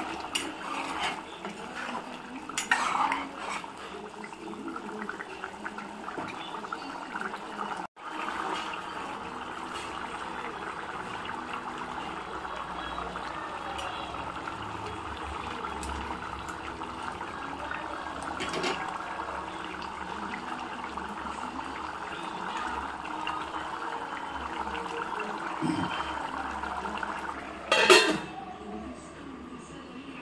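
Thick mutton curry simmering and bubbling in an open pressure cooker while a steel spoon scrapes and clinks against the pot as it is stirred. A loud metal clang comes near the end as a steel lid is set on the pot.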